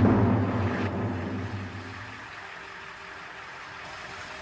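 Bus engine running with a steady low hum, loud at first and dying down to a quieter steady level within about two seconds.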